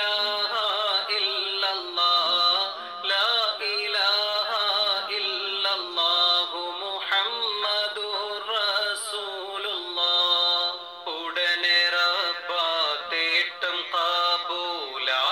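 A voice singing an Islamic devotional mala song in a continuous, ornamented melody, with long held notes that waver and slide between pitches and no drum beat. The recording sounds dull and muffled, as if the treble has been cut off.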